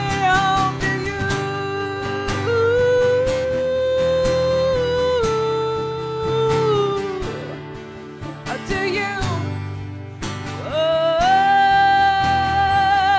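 Live country band music between sung lines: strummed guitars keeping a steady rhythm under a long held melody line with vibrato that slides between notes. The music dips in loudness partway through and swells again near the end.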